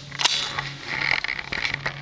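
Handling noise: a sharp rustle about a quarter second in, then a short scuffing noise and a few light clicks, as the camera is moved about over the cricket bat guitar laid on the grass. A faint steady low hum runs underneath.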